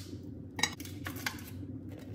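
Metal kitchen tongs clinking against a plate and baking tray as food is lifted and set down: a few sharp clicks, the loudest about halfway through.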